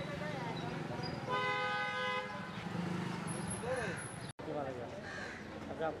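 A vehicle horn gives one steady honk of about a second, about a second in, over street background noise.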